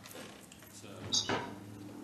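A brief clink and clatter of hard objects about a second in, as of something knocked or set down, over faint room noise.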